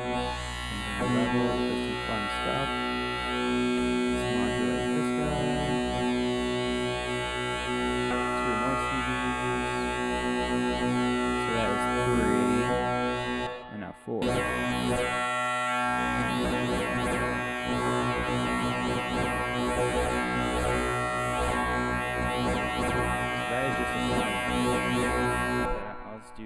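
Modular synth tone: a sine wave passed through three waveshaper stages of a TripsQuad Eurorack module in series, giving a sustained tone thick with added harmonics that wavers under random modulation. It drops out briefly about halfway through and cuts off suddenly at the end.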